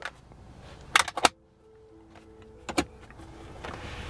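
Clicks and knocks as a bag and its contents are handled on the carpeted floor of a car boot: a quick cluster about a second in and another single click near three seconds. A rustling hiss rises near the end.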